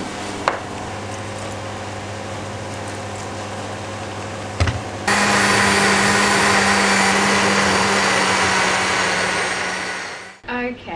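A steady low hum, then a click, then a countertop blender starts about halfway in and runs steadily, puréeing roasted pumpkin into soup. It eases off near the end.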